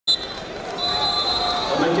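A sharp thump right at the start, then a referee's whistle sounding a high steady tone for most of a second as the bout begins, over arena crowd hubbub. A man's commentary voice comes in near the end.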